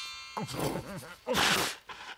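A man's cartoon sneeze from a head cold: a rising "ah… ah…" build-up, then the sneeze a little over a second in. At the very start the last shimmer of magic-spell chimes fades out.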